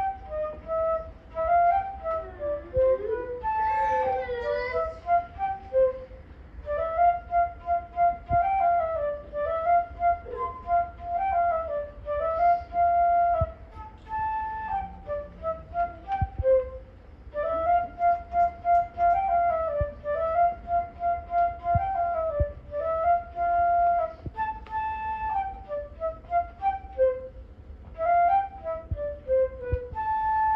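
Solo flute playing a simple unaccompanied melody note by note, one phrase repeated partway through.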